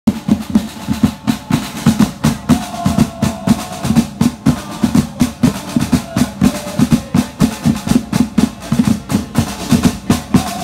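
A supporters' drum group playing snare and tom drums on stands, beating out a fast, steady rhythm of many strikes a second.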